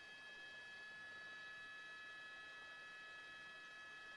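Near silence: a faint hiss with a few steady high-pitched tones held unchanged throughout.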